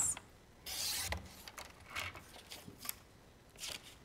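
Sliding paper trimmer blade cutting through a sheet of pearlescent cardstock in one quick stroke of about half a second, followed by a few light clicks from the trimmer and the card being handled.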